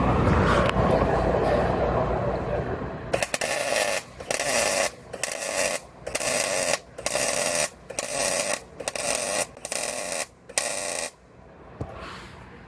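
MIG welder laying a series of short welds on car body sheet metal: about nine crackling bursts, each half a second to a second long with short pauses between, starting a few seconds in.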